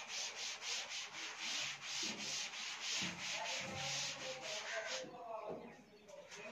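Chalk scratching on a chalkboard as a formula is written: a quick run of short strokes, about three a second, stopping about five seconds in.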